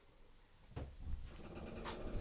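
Faint handling noise: rustling and shuffling that starts about a second in, likely the small hexagonal metal inserts of a tap splitter being picked up, with a sharp click near the end.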